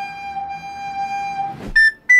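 A soprano recorder holding one long, steady note that breaks off with a brief thump about one and a half seconds in. A second recorder then starts a short, higher note near the end.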